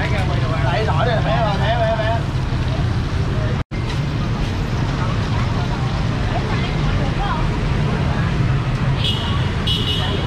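Busy street ambience: a steady low rumble of motorbike and car traffic under a hubbub of nearby voices, the voices clearest in the first two seconds. The sound drops out for an instant just before four seconds in.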